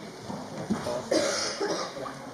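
A person coughing, a short loud cough about a second in, against low murmuring in the church.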